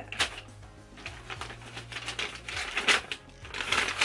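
Paper and packaging rustling and crinkling in irregular bursts as a torn stationery envelope and its contents are handled.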